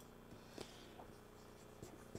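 Near silence with a few faint, short strokes of a marker writing on a whiteboard.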